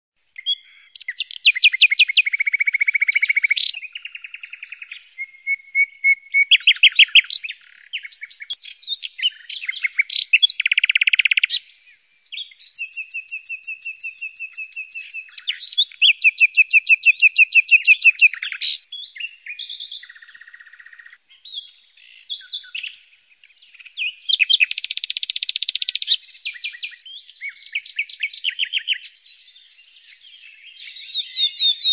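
Nightingale singing a long series of varied phrases: fast runs of repeated notes, trills and single whistled notes, with short pauses between phrases.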